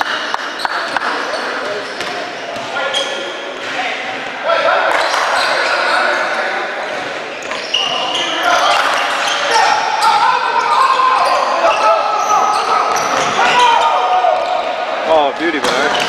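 A basketball bouncing on a hardwood gym floor, with short high sneaker squeaks and voices calling out, echoing in a large hall.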